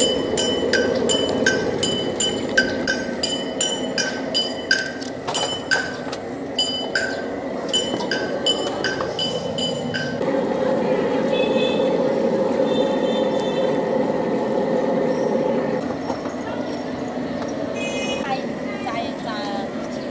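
Metal kitchen utensils clinking against a frying wok, sharp ringing clinks a little more often than once a second. The clinking stops about halfway through, leaving a steady background.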